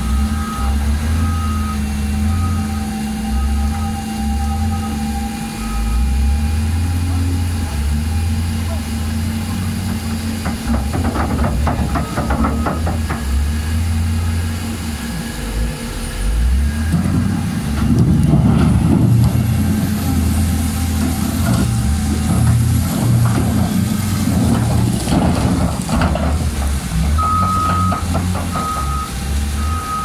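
Caterpillar wheel loader's diesel engine running under working load, with a beeping backup alarm at the start and again near the end. About two-thirds of the way through the engine grows louder and rougher as the bucket works the soil, with scraping.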